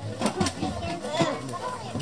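Indistinct, quiet talking from a person's voice.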